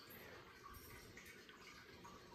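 Near silence, with a few faint soft dabs of a paint-loaded cotton swab against paper.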